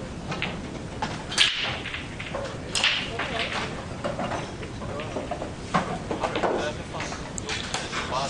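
Break-off shot in English eight-ball pool: a loud, sharp crack about a second and a half in as the cue ball smashes into the racked reds and yellows. It is followed by a second crack and scattered clicks as the balls hit each other and the cushions while the pack spreads.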